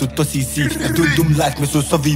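Hip hop song: a male voice rapping over a beat with a deep, sustained bass.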